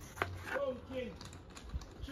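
A kitchen knife chops green vegetables on a plastic cutting board, with a sharp knock just after the start and another near the end. Between the knocks, a man's voice calls out in the distance: a street vendor crying his wares, green plantain among them.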